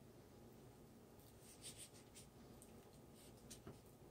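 Faint scraping as a silicone spatula spreads thick refried beans over a crisp blue corn taco shell: a few soft scrapes, clustered about a second and a half in and again near the end.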